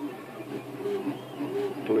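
A man's voice, low and murmured: a few short hesitation hums, then a spoken word at the very end, over a faint steady background hum.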